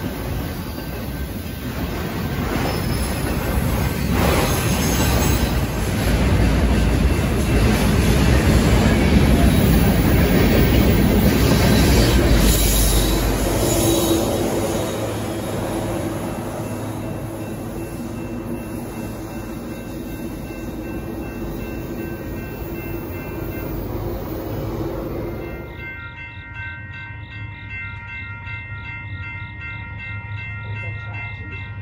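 Freight train rolling past at close range: a steady rumble and wheel-on-rail noise, loudest around the middle and easing in the second half. Near the end, after a sudden change, a grade-crossing bell rings repeatedly.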